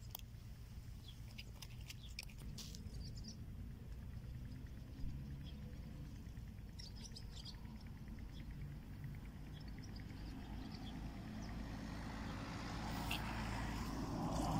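Small birds chirping in scattered short calls over a steady low background rumble, with a single sharp click about five seconds in. A rustling noise builds up near the end.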